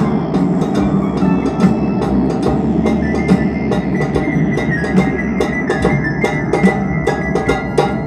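Improvised stick percussion, sharp strokes at a quick, uneven pace, played over blues music with held tones underneath.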